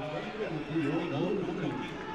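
Men's voices shouting over football stadium ambience, in a goal celebration.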